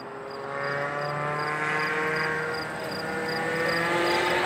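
A car's engine accelerating on a race track, its pitch climbing steadily as it pulls through a gear and growing louder over the first two seconds.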